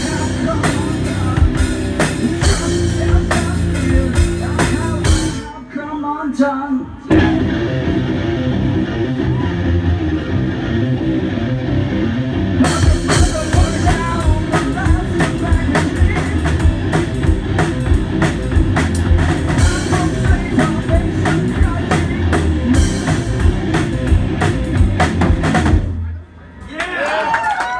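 Live heavy rock from a guitar-and-drums duo: distorted electric guitar through a Sovtek amp with a full drum kit. The band drops out briefly about five seconds in, then crashes back in and plays on, stopping abruptly at the close.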